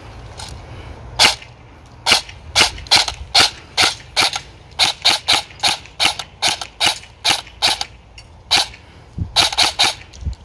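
EMG Salient Arms GRY M4 airsoft electric gun with a G&P i5 gearbox firing on semi-automatic: about twenty single shots, two to three a second, with a couple of short pauses between strings.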